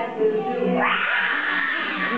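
Young children singing, then breaking into a high squealing cry that rises sharply and holds for about a second, an animal noise in a song about zoo animals.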